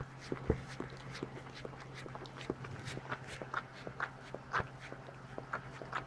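A standard poodle licking her newborn puppy clean, a run of irregular small clicks and smacks from her mouth. A steady low hum sits underneath.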